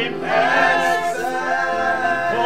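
Gospel group singing a worship song together, a man's voice leading, with long held notes.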